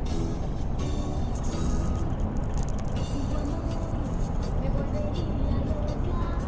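Steady low rumble of road noise inside a moving vehicle, with music, including a singing voice, playing under it.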